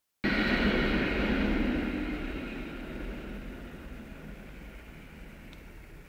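A tram passing close by: rolling rumble with a steady high-pitched whine, loud at first and fading away over several seconds.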